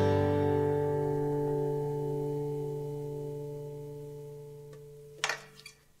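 Acoustic guitar's last strummed chord left to ring out, fading steadily over about five seconds. A short noise about five seconds in ends it, then the sound cuts out.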